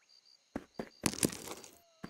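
A few light taps, then a brief rustling clatter of quick small knocks, from a cartoon sound effect.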